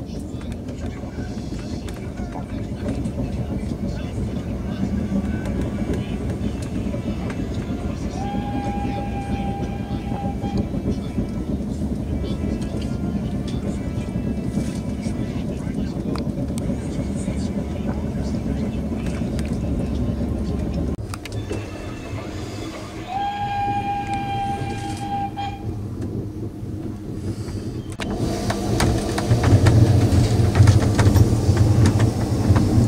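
Steady rumble of a moving train, with a single-note horn sounding twice, each blast held about two seconds.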